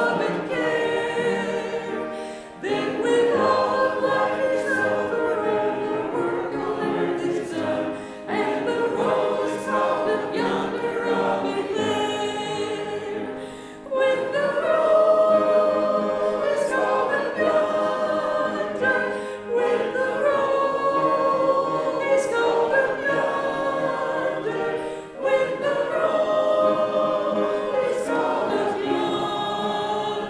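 A church congregation singing a hymn together, led by a song leader. The singing goes line by line, with a short break between phrases about every five or six seconds.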